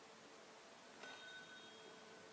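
A faint shop door bell rings once about a second in, as the door opens, its tone fading away over about a second.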